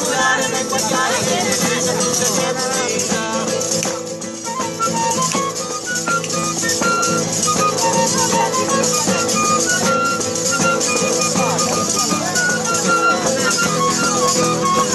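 Live folk music: a nylon-string acoustic guitar strummed, with a singing voice in the first few seconds. From about four seconds in, a clarinet takes over with a melody of held notes.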